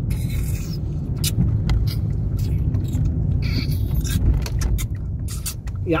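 Car cabin noise while driving: a steady low engine and road rumble, with scattered light clicks and knocks from inside the car.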